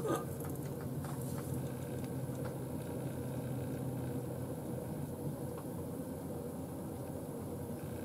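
A steady low mechanical hum, even in level throughout.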